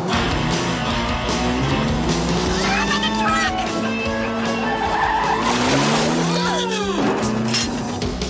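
Film soundtrack music under cars speeding past, with squealing tyres twice: about three seconds in and again near the end.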